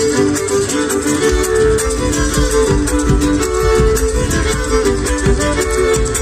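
Live amplified Argentine folk music led by violin, with guitar and drums keeping a steady beat.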